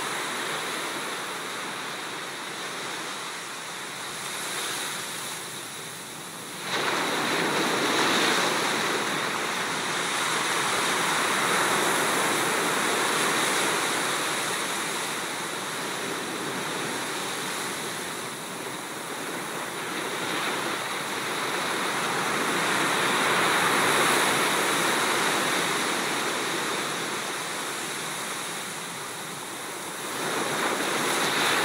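Small sea waves breaking and washing up a sand beach, the surf swelling and easing every few seconds. The sound steps up suddenly about seven seconds in.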